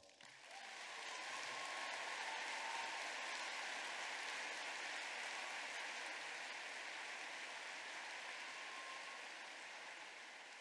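Audience applauding. The applause builds up within the first second and then slowly fades.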